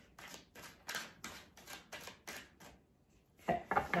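A deck of tarot cards being shuffled hand over hand, the cards slapping and sliding in quick, even strokes about four a second, which stop about three seconds in.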